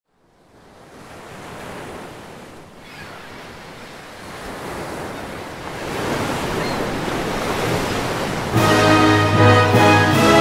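Ocean surf, a rushing wash of breaking waves, fading in from silence and swelling steadily louder. About eight and a half seconds in, orchestral music with brass comes in suddenly and becomes the loudest sound.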